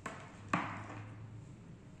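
A small click, then about half a second in a single sharp knock with a brief ring, as small electronic parts are handled on a table, over a faint steady low hum.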